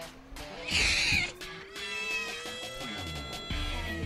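Background music with a slow rising tone and held notes; about a second in, a small dog gives one short, loud yelp.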